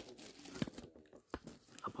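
Faint handling noise from a hand-held camera being moved and refocused: light rustling with three sharp clicks.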